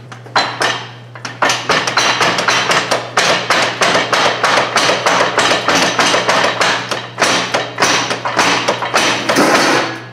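Rapid metal knocking, several sharp blows a second, on a Case 830 tractor's draft-arm linkage, which is seized and won't drop, all over a steady low hum.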